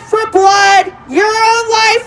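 A woman's raised voice amplified through a portable loudspeaker's handheld microphone, pitched high and drawn out in a sing-song way: three long phrases with short breaks between them.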